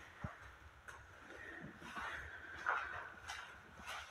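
Faint footsteps: soft knocks at walking pace, with light rustle from the handheld camera moving.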